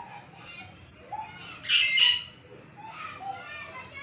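A loud, shrill squawk or shriek lasting about half a second, about two seconds in, over faint wavering background voices.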